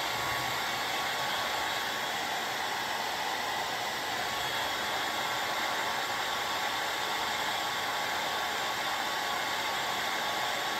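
Handheld hair dryer running steadily: an even rush of air with one steady whine over it.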